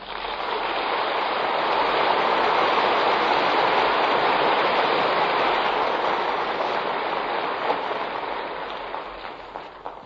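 Studio audience applauding after a musical number. The applause breaks out suddenly, holds for several seconds, then slowly dies away, heard through the narrow, dull sound of an old radio broadcast recording.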